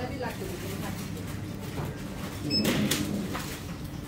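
Shop background: faint voices over a steady low hum, with one short rustling noise about two and a half seconds in as fruit is handled.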